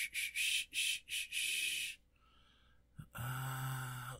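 A quick run of short, hissy noises close to the microphone for about two seconds, then a near-quiet pause and a drawn-out spoken "uh" near the end.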